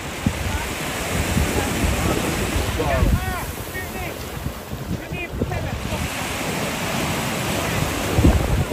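Small waves washing onto a sandy beach in the shallows, with wind buffeting the microphone in low rumbling gusts.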